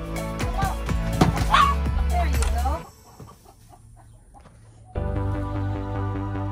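Background music with chickens clucking and calling over it. The music drops out for about two seconds in the middle, leaving only faint clucks, then comes back.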